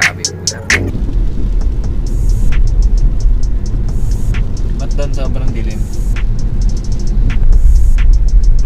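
Car driving on a rain-wet road, heard from inside the cabin as a steady low rumble of road and engine noise, under background music with a steady beat.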